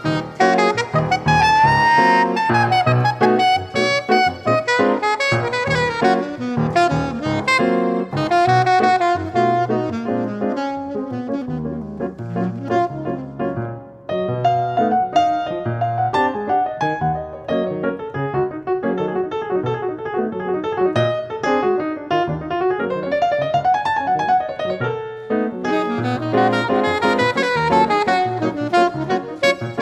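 Saxophone and piano playing jazz: the saxophone carries an improvised melody with sliding, bent notes over percussive piano chords and low bass notes, with a brief lull about halfway through.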